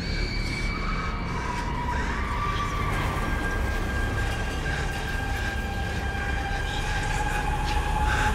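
Film sound track with a steady low rumble under long held high tones that shift in pitch every few seconds.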